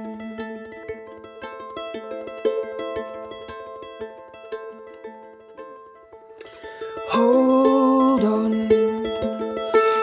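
Instrumental break of an acoustic folk song: soft plucked notes on acoustic guitar and viola played pizzicato, held like a ukulele. About seven seconds in, a much louder sustained melodic line comes in over the plucking.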